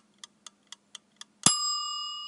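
Sound-effect logo sting: stopwatch-style ticking, about four ticks a second, then a single bright bell ding about one and a half seconds in that rings on and slowly fades.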